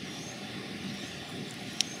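Steady background noise of an outdoor setting, with one brief faint click near the end.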